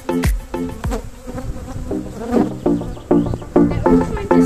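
Honeybees buzzing around an opened hive, under background electronic music with a steady beat. The beat drops out about half a second in and picks up again just past the halfway point.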